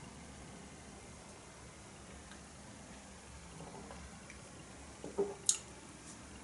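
Faint sipping and swallowing of beer from a glass. About five seconds in, a stemmed glass is set down on a table with a soft knock and a short, sharp clink.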